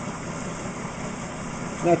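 Exercise bike being pedalled to spin a car alternator from a 1998 Plymouth Breeze, giving a steady whirring hum. The alternator is charging a battery bank at a little over an amp.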